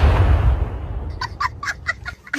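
A sound-effect explosion dies away over the first second. Then, from just past halfway, comes a rapid run of about six short gobbling bird calls, a comic turkey-gobble sound effect.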